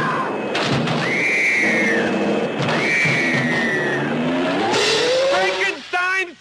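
Movie soundtrack of a car race: dense engine and crash noise with three long high screeches, like tyres squealing. A rising whine comes near the end, just before a voice begins.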